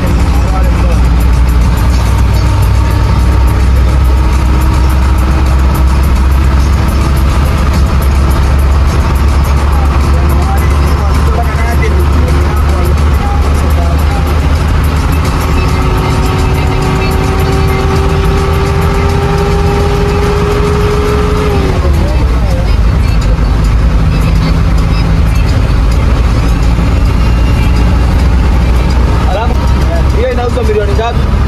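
Cabin noise of a vehicle driving on a wet road: deep engine and road rumble with a steady engine whine that climbs slowly and drops away about two-thirds of the way through.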